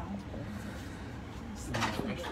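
Low steady hum of an Eiffel Tower elevator car climbing, heard from inside the car, with faint murmured voices. A brief hiss comes near the end.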